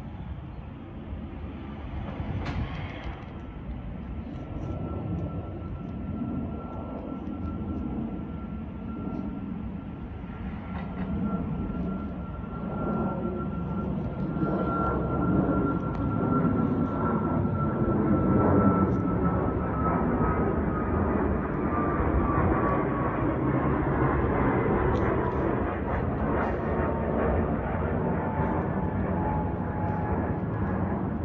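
Twin-engine jet airliner flying overhead: a rumble that grows steadily louder, with a high engine whine that holds steady and then slides down in pitch past the midpoint as the jet goes over and away.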